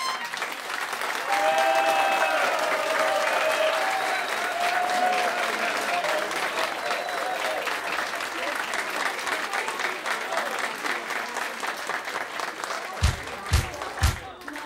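Audience applauding in sustained clapping that slowly thins out, with voices calling out during the first few seconds. A few low thumps come near the end.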